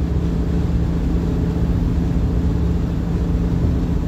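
Car interior road noise while cruising at highway speed: a steady low rumble of tyres and engine with a constant low hum.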